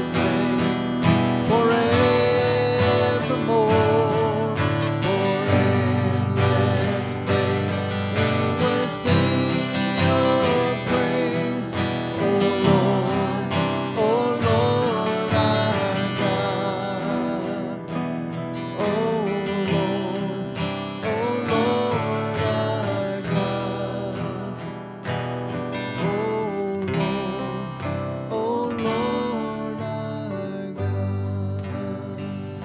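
Live gospel song: a strummed acoustic guitar and keyboard accompany singing voices held with vibrato, continuing without a break.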